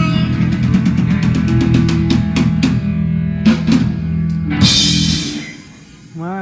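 Live rock band with electric guitar, bass and drum kit ending a song. Held chords sit under a rapid drum fill and several accented hits, then a final cymbal crash about four and a half seconds in, after which the music stops and dies away.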